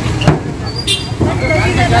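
Idling vehicle engines, a steady low rumble, with voices talking over it and a sharp click about a quarter second in.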